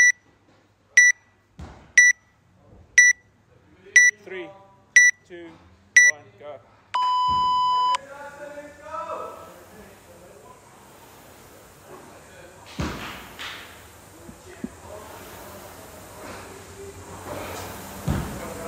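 Workout timer counting down: short high beeps once a second, then a longer, lower beep about seven seconds in that signals the start of the row. After it comes the quieter running noise of the air-resistance rowing machine being rowed, with a few knocks.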